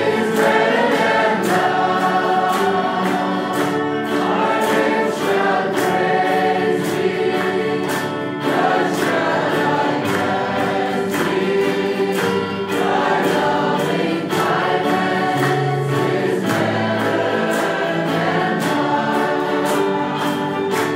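A choir singing Christian gospel music, with sustained, layered vocal lines throughout.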